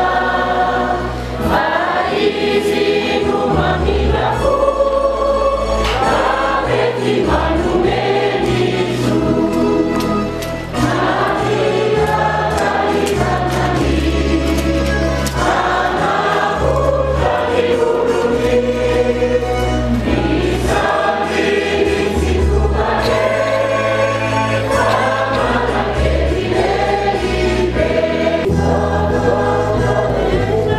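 A choir singing a church hymn in several voices, over a low bass accompaniment that holds and changes notes in steps.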